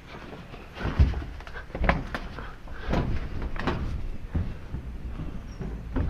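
Scattered knocks and thumps on a corrugated sheet-metal shed roof as a person climbs and shifts about on it, about five separate knocks over a few seconds.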